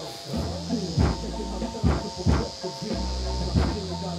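Music with deep, steady bass notes and a regular beat playing through the car's stereo and its JL Audio W3 10-inch subwoofer, heard at the car's rear. The owner judges the license plate now silent, though something still rattles inside the trunk.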